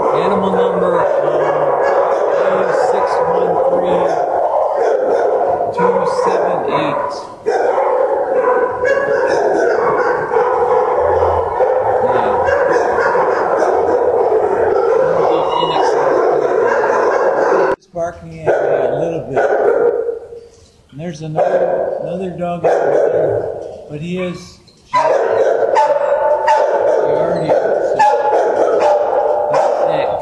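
Many dogs barking at once in shelter kennels, a continuous loud din of overlapping barks, with a few short lulls about two-thirds of the way through.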